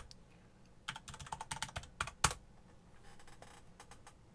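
Computer keyboard being typed on: a single key click, then a quick run of about a dozen keystrokes, then two harder key strikes, as a login is entered at the lock screen.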